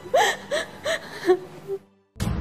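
A woman crying in short gasping sobs, about three a second, which stop suddenly just before the end.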